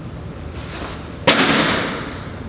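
Baseball striking a tic-tac-toe pitching target: one sharp smack about a second and a quarter in, ringing on briefly in the netted cage.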